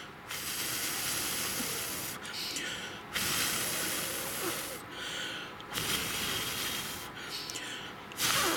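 A person blowing out three long breaths, each about a second and a half to two seconds, with short pauses between.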